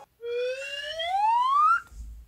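Rising slide-whistle sound effect: one whistle gliding smoothly up in pitch for about a second and a half, cut off suddenly near the end.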